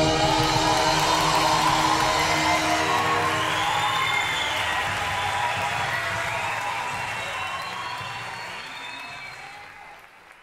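The orchestra and choir's final held chord dies away in the first couple of seconds, and audience applause and cheering follow, with a few gliding high whistles. The sound fades steadily toward the end.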